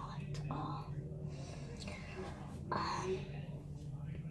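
A girl whispering, in short breathy phrases, over a steady low hum.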